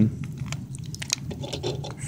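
Clear plastic wrapper crinkling in the fingers, with many small irregular clicks and rustles, as a halogen bulb is pushed into its lamp socket.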